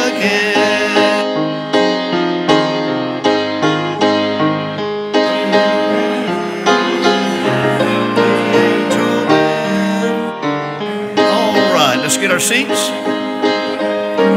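Piano playing a gospel hymn tune, a steady run of struck chords and melody notes, with voices talking underneath.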